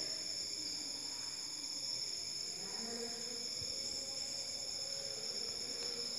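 A steady, high-pitched background drone made of several constant tones, running unchanged under a pause in the narration, with one faint low knock about halfway through.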